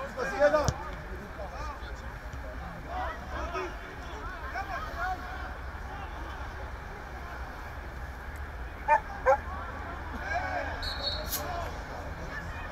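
Shouts and calls of footballers during play, scattered through, with two short loud shouts about nine seconds in, over a steady low rumble.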